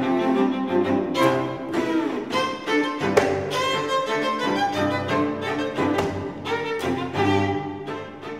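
Viola and cello duo playing, both bowed, in a passage of sharply accented strokes.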